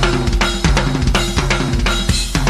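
Live rock drum kit played fast and busy, many strikes a second, over repeating low pitched notes.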